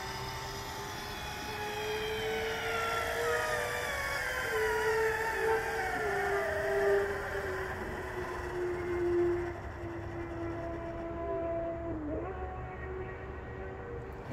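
Electric linear actuator on a dual-axis solar tracker running as it drives the panel out to full extension for its overnight park. Its motor whine holds steady while its pitch wanders slowly, with a brief dip about twelve seconds in.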